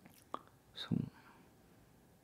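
A man's mouth noises in a pause in his talk: a short lip or tongue click, then a brief, soft, breathy murmur.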